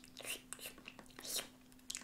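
Soft mouth noises from a child pretending to lick and eat: a few short, faint smacks and slurps.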